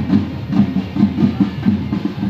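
A marching band's drums, including a bass drum, beating a steady march rhythm of a few strokes a second.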